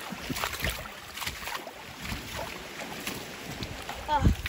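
Shallow river water splashing and sloshing irregularly as someone wades through it over a rocky bed, with wind rumbling on the microphone.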